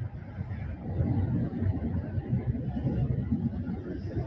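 Outdoor city ambience at night: a low, steady rumble of street traffic.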